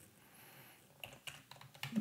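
Computer keyboard typing: a quick run of faint keystrokes starting about a second in, as a short phrase is typed into a text field.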